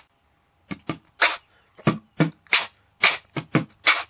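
A quick, irregular run of about ten sharp pops or hits with short silences between them.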